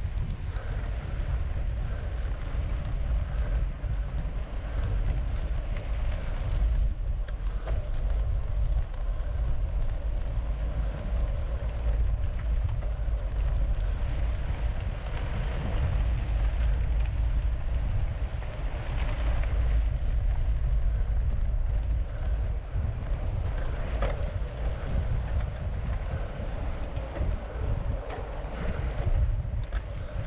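Steady wind buffeting the microphone of a mountain bike moving at about 27 km/h, over the rumble of its tyres rolling on a sandy dirt road.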